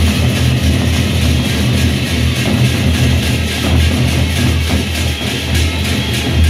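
Sasak gendang beleq ensemble playing: big double-headed barrel drums beaten in a dense, steady rhythm, with metallic percussion shimmering above.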